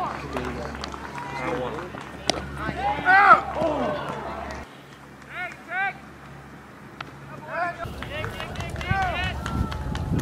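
Baseball game sound outdoors: voices calling and shouting at intervals over a steady low hum, with a few sharp knocks.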